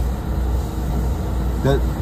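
NJ Transit commuter train running at speed, heard from inside the passenger car as a steady low rumble with wheel and track noise.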